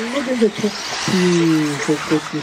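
A man's voice talking, drawing out one long, slightly falling syllable about a second in, over a steady high hiss.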